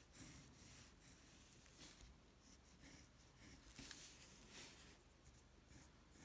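Faint scratching of a pencil drawing light lines on paper, in short, irregular strokes.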